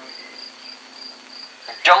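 Cricket chirping steadily, a short high-pitched chirp about four times a second, over a faint low hum; a man's voice comes in near the end.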